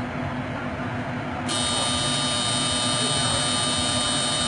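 A machine switches on abruptly about a second and a half in and runs on with a steady high whine over a hiss.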